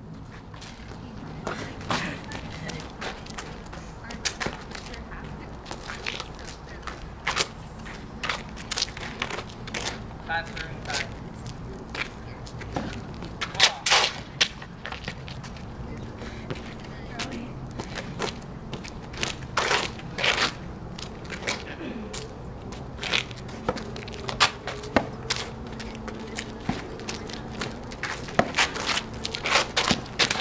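Freeball rally on an asphalt court: sharp pops of racket strokes and ball bounces, irregularly spaced, often about a second apart, over a steady low hum.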